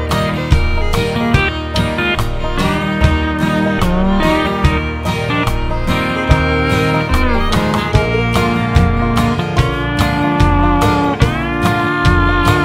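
Instrumental break of a country song: a steel guitar lead with sliding notes over strummed acoustic guitar, upright bass and a steady drum beat.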